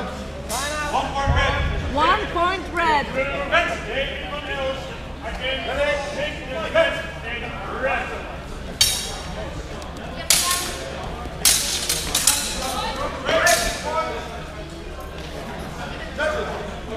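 Steel HEMA training swords clashing in a fencing bout: a handful of sharp metallic clanks, one near the start and a cluster in the second half, over voices in a large hall.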